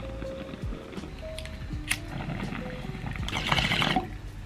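Background music with a steady beat, over a glass bong bubbling as smoke is drawn through its water, loudest and densest in the last second.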